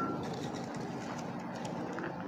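Steady, fairly quiet outdoor background noise with no distinct events.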